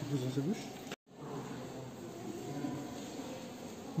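Indistinct voices talking, broken by a sudden brief dropout about a second in, then a steady low murmur of background voices.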